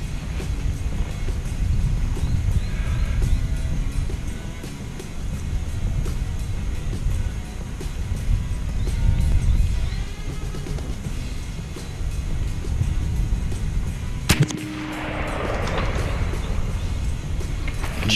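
A single shot from an AEA Zeus .72 calibre big-bore PCP air rifle about fourteen seconds in: one sharp crack, then a noisy wash that fades over about two seconds. Under it runs a steady low rumble.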